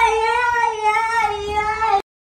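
A child's high-pitched voice holding one long, slightly wavering note, cut off abruptly at the end.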